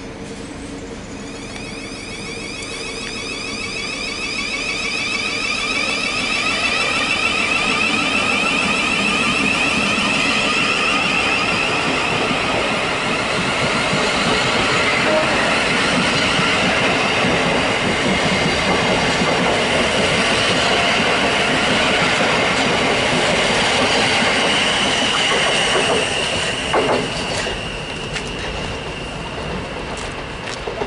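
A Thameslink Class 700 (Siemens Desiro City) electric multiple unit pulling past at low speed. The whine of its traction equipment rises slowly in pitch as it gathers speed, over wheel and rail noise that grows louder over the first few seconds. A brief knock comes near the end.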